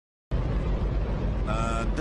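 Hydrogen-oxygen rocket engine firing on a test stand, a loud, steady roar. A man's voice shouts over it briefly near the end.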